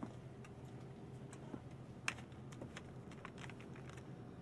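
Irregular light clicks and taps, the sharpest about two seconds in, over a steady low hum.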